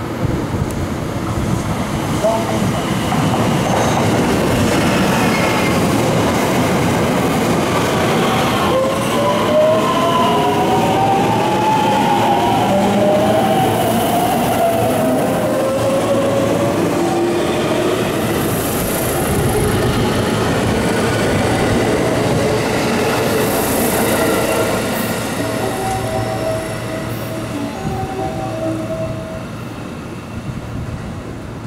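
JR West electric commuter trains running at the station: a loud, steady rolling rumble of wheels on rail. In the middle, one motor whine glides up in pitch while another glides down, as one train accelerates and the other brakes.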